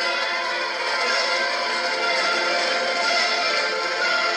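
High school marching band playing, with flutes sounding in the front ranks, in a steady passage of held chords. Heard as a TV broadcast recorded off the set.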